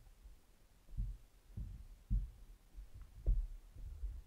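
A series of low, dull thuds, roughly two a second, beginning about a second in.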